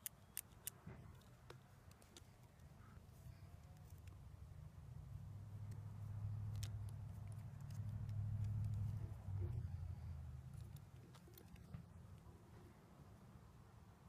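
Faint clicks and ticks of a battery charger's plastic connectors, clamps and cables being handled, sharpest within the first second. Under them a low hum swells about halfway through and fades again.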